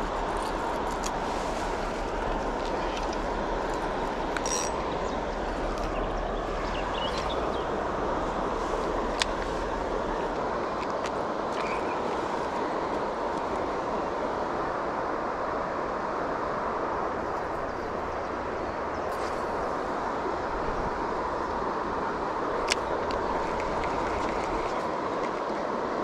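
Steady noise of river water flowing, with a low rumble of wind on the microphone that drops away near the end and a few faint clicks.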